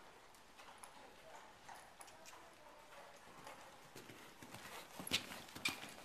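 Hoofbeats of a horse cantering on a soft indoor arena surface. They are faint at first and grow louder as the horse nears, with two loud footfalls about half a second apart near the end as it passes close by.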